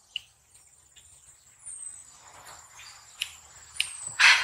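Faint background of insects, with a steady high-pitched trill and a few short falling chirps, plus a soft click near the start.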